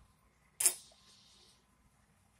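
A single sharp click about half a second in, followed by a brief fading hiss.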